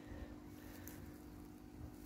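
Quiet background: a faint steady hum with a low rumble underneath and no distinct sound.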